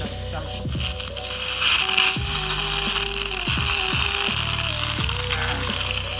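Steady gas hiss from an aerosol can whose nozzle is held in the neck of a rubber balloon, filling it, from about a second in until shortly before the end, over background music.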